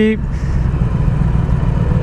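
A 2008 Yamaha YZF R6's inline-four engine running while the bike cruises at a steady speed, heard as an even low rumble of engine and riding noise.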